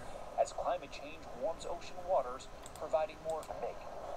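Faint, tinny speech from a replayed news report, heard in short broken snatches.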